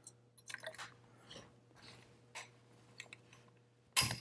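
A jeweler's screwdriver tip picking and scraping at the steel spring clip that holds an FN FNC's handguards, giving faint scattered metallic clicks, then a sharper snap right at the end as the clip pops loose.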